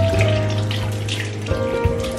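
Water splashing in a bathroom sink as hands rinse a face, heard over background music with held notes and a bass line.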